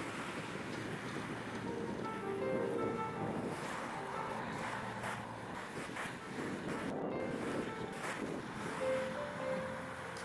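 Waves breaking on the shore with wind buffeting the microphone, and soft background music with short melodic notes coming in about two seconds in.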